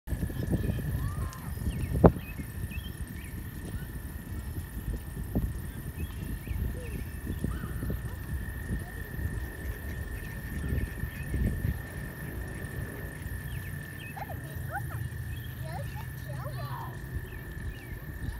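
A steady high chorus of spring peepers, with gusty wind rumbling on the microphone and a few short calls over it. A single sharp knock about two seconds in is the loudest sound.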